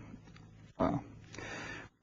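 A man's brief hesitant 'uh' about a second in, followed by a soft breath in just before he speaks again.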